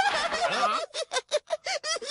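A cartoon voice call with a bending pitch, then a quick run of short, staccato laughs, about seven in a second: Nobita laughing at the others.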